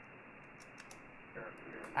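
Steady hiss of band static from a FlexRadio software-defined receiver on 40-metre lower sideband, sounding thin and cut off at the top by its narrow voice filter. It switches on abruptly as the transmitter unkeys after "go ahead", leaving the receiver open for the other station's reply. A faint voice rises out of the hiss about a second and a half in, and a few light clicks sound over it.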